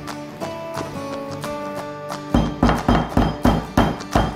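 Instrumental background music with steady held notes. About two seconds in, six heavy thuds come at about three a second: the okoko stick being pounded over a clay pot.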